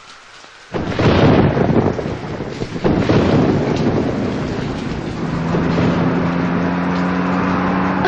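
Thunderstorm on a film soundtrack: a sudden crack of thunder under a second in, rumbling on into the steady noise of heavy rain. About five seconds in, a low steady hum of a few tones joins the rain.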